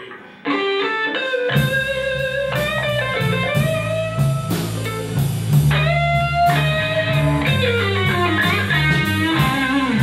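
Live blues trio of electric guitar, electric bass and drum kit starting a song: the electric guitar comes in alone with a short lick, and bass and drums join about a second and a half in, with the guitar playing a lead line of bent notes over them.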